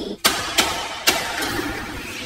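A steady rushing noise that starts suddenly about a quarter second in, with a few sharp clicks through it.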